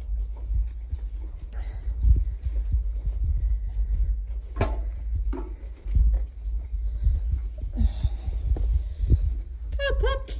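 Soft irregular thumps of footsteps and phone handling over a steady low rumble as someone walks through straw, with a short sharp sound about halfway through. Right at the end a Dalmatian puppy starts a high whine.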